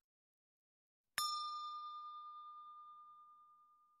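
A single bell-like ding chime, struck about a second in, rings out with a clear tone and fades away over about three seconds.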